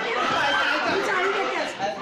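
Several people talking at once, their voices overlapping in a confused jumble of chatter.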